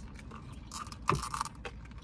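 Handling noise from a plastic iced-drink cup being lifted: faint clicks, then a brief rustle and clatter about a second in.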